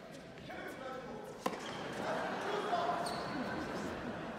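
A single sharp tennis ball impact, racket or court, about a third of the way in, ringing in a large hall over the spectators' continuous murmured chatter.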